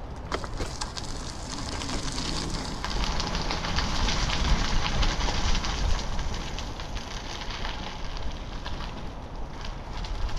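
Wind buffeting the microphone of a camera on a moving bicycle, a steady low rumble, with a hiss of rolling tyre noise that swells in the middle and scattered small clicks and rattles.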